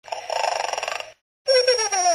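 A robot voice: a raspy, buzzing growl of about a second, then after a brief silence a short vocal cry that falls in pitch.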